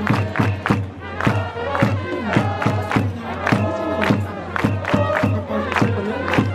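Baseball cheering section performing a player's cheer song: trumpets play the tune over a steady drum beat of about three strokes a second while the crowd chants along.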